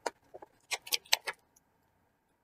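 A page of a spiral-bound picture book being turned and handled: a quick run of crisp paper rustles and sharp clicks in the first second and a half.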